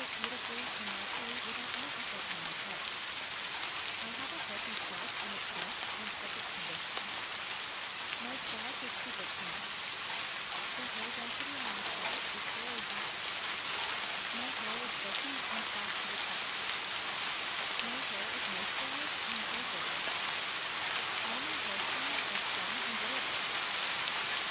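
Steady rain, an even hiss with no breaks, with a faint spoken voice mixed low beneath it reciting affirmations.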